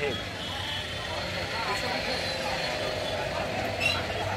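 Steady engine noise running throughout, with a faint tone that rises a little in the second half.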